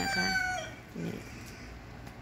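Rooster crowing: the held end of a long crow, which drops in pitch and stops about half a second in.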